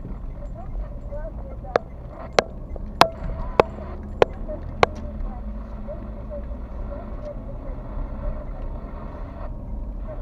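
Inside a car cabin, the engine and tyres rumble steadily while the turn-signal indicator ticks six times, about two ticks a second, during the turn, then stops.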